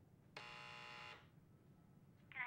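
Door buzzer on a wall intercom, sounded once by pressing its button: a steady electric buzz just under a second long.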